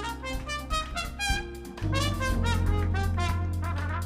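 A trumpet solo over a live band, a quick run of short notes, with a low held note sounding underneath from about two seconds in.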